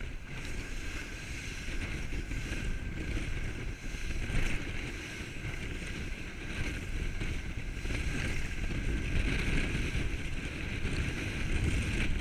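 Small powerboat running through rough chop: water rushing and spraying along the hull, with wind buffeting the microphone. The noise is steady and grows a little louder in the last few seconds.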